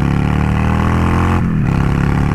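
Honda Shadow 600's V-twin engine pulling under acceleration, heard from the rider's seat, with a brief dip in the engine sound about one and a half seconds in before it pulls again.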